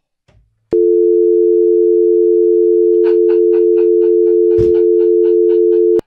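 Telephone dial tone: a loud, steady hum of two tones that comes in sharply less than a second in and cuts off suddenly at the end. Faint ticking, about four a second, runs under it in the second half.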